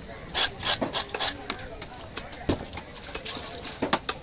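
Knife blade scraping along the skin of a cobia on a wet stone slab, a run of quick rasping strokes, then two heavier thumps, about two and a half seconds in and near the end, as the fish is handled.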